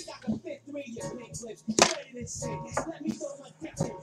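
Hard plastic card holders clacking as they are handled and set down, two sharp clacks, the louder about two seconds in and another near the end, over quiet background music.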